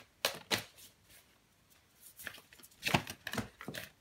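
A deck of numerology oracle cards being shuffled by hand, in two spells of quick card-on-card strokes with a lull of about a second between. Several cards spill out of the deck.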